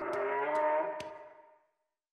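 Sound-effect bellow of a CGI Protoceratops, one long pitched call that fades away about a second and a half in.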